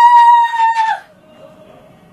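A rooster crowing, its long drawn-out final note ending about a second in.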